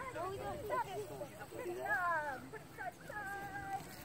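High-pitched children's voices talking and calling, with no clear words, over a steady background of outdoor noise.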